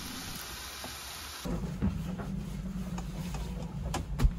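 Fish fillets sizzling in a frying pan for about a second and a half, then cut off abruptly by a steady low hum and rumble with a few clicks and knocks.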